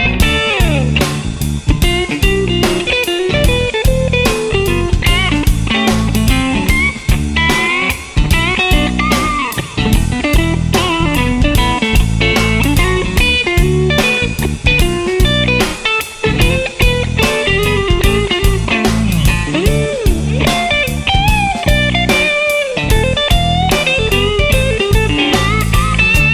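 Blues-rock electric guitar lead on a Stratocaster, with bent and sliding notes, over electric bass and drums keeping a steady groove.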